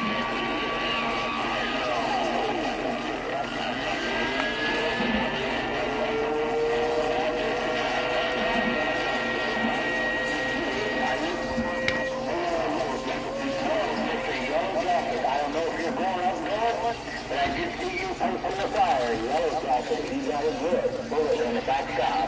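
CB radio receiver hiss with steady whistling tones, one sliding up in pitch a few seconds in. From about halfway through, garbled, distorted voices of distant skip stations break through the noise.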